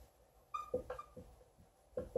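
Dry-erase marker writing on a whiteboard: a quick run of short pen strokes, with high squeaks from the marker tip about half a second and a second in.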